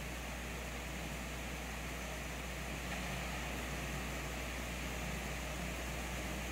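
Steady low hum and hiss of room tone through the altar microphone, with no distinct events.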